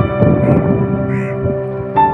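Instrumental background music with sustained, held tones, over which two short caws, crow-like, sound about half a second and just over a second in.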